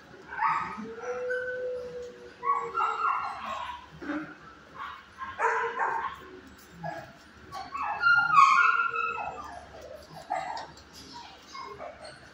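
Dogs in a shelter kennel barking, yipping and whining in repeated short bursts, with one longer drawn-out whine about a second in; the loudest burst comes about eight seconds in.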